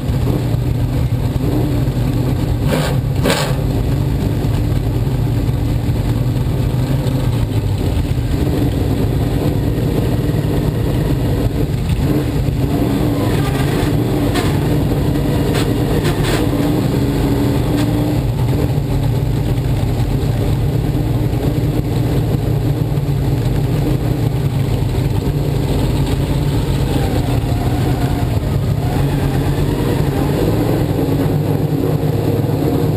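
Open sportsman dirt modified's small-block V8 running at low speed, heard from on board at close range, with light throttle changes. A few short clicks come about three seconds in and twice more around the middle.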